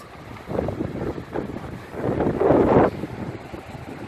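Wind buffeting the microphone over the wash of sea surf against a rocky shoreline, coming in uneven surges with the loudest about two seconds in.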